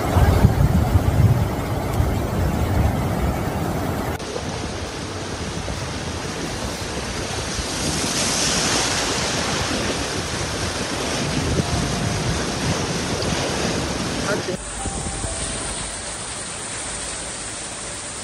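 Flash floodwater rushing and churning in a continuous noisy wash, with wind buffeting the microphone. The sound changes abruptly twice where the phone clips are cut together.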